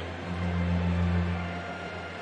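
A steady low hum, loudest in the middle, over a broad murmur of ballpark crowd noise.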